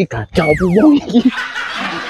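Men's voices exclaiming "oh, oh" and snickering as they scuffle, with a whistle-like tone gliding steadily downward about half a second in.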